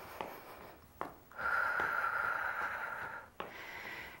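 A woman breathing out hard from exertion: one long, breathy exhale of about two seconds with a slight whistle, starting about a second and a half in. A few faint taps come before and after it.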